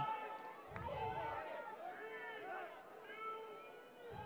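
Faint overlapping shouts and calls from lacrosse players and spectators, several voices at once.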